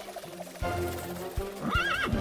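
Cartoon foal whinnying near the end, a short wavering call that rises and falls, over background music, with a thud about half a second in.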